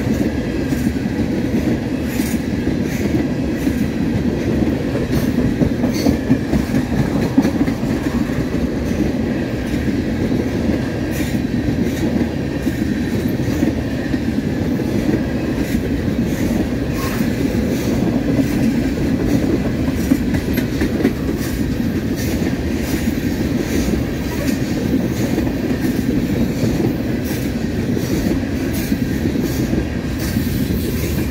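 Freight train tank cars rolling past on the track: a steady rumble with the wheels clicking irregularly over the rail joints.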